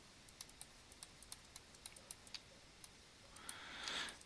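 Faint, irregular clicks and taps of a stylus writing on a pen tablet. A soft rush of noise builds near the end.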